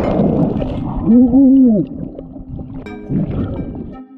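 Water churning with bubbles, heard from underwater. About a second in, a loud wavering voice-like cry rises and falls for under a second. Faint music tones follow in the second half.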